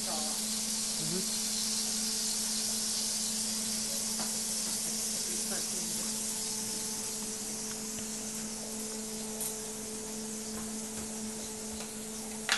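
Giant hamburger patty topped with shredded cheese sizzling on an electric griddle: a steady hiss that fades somewhat in the second half, over a steady low hum.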